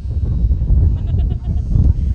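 Spectators' voices calling out at a baseball game, over a heavy, continuous low rumble.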